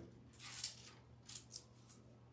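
Faint rustle of thin Bible pages being turned by hand: three or four soft swishes.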